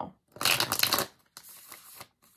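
A tarot deck being shuffled by hand: a quick, dense run of card flicks lasting about half a second, then a softer, quieter rustle of cards near the end.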